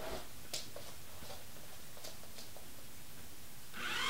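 Quiet room tone with a few faint, light clicks while the door's controller sits out its programmed four-second wait.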